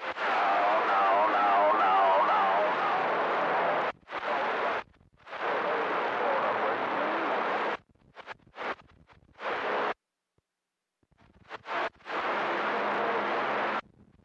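CB radio receiver on channel 28 picking up weak, distant skip transmissions: several bursts of heavy static with faint, garbled voices buried in it, each cutting off abruptly as the squelch closes. The longest burst comes first, and there is a second or so of silence near the middle.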